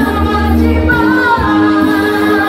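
A choir of mostly women's voices sings an Indonesian patriotic song, holding long notes over a steady low bass accompaniment.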